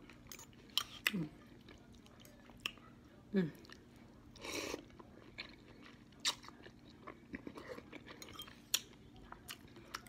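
Close-up mouth noises of a person eating instant noodles: scattered wet clicks and smacks of chewing, a short slurp about halfway through, and two brief hummed "mm"s of enjoyment.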